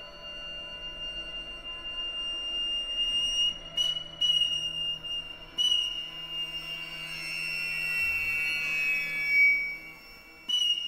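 Contemporary chamber-ensemble music: a thin, high sustained tone holds over quiet low notes. It is broken by a few sharp, sudden attacks around four to six seconds in and slides downward near the end.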